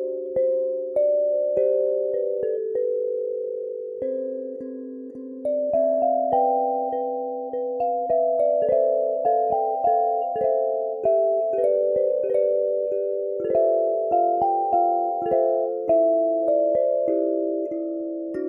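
Seeds 41-key chromatic kalimba played solo: thumbs pluck the metal tines in a melody over chords, each note ringing on and overlapping the next. The melody moves higher about five seconds in.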